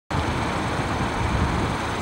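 Steady outdoor background noise, a low rumble with hiss and no distinct tones, starting abruptly as the recording begins.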